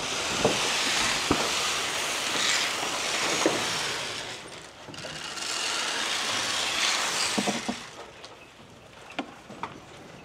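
Dry goat feed poured from a bucket into a wooden trough, rattling in two long pours of about four and three seconds with a short break between them, while goats jostle at the feeder. A few sharp knocks fall among the pours.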